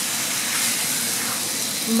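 Marinated chicken pieces and onion-tomato masala sizzling in a hot stainless steel skillet while a spatula stirs them: a steady hiss.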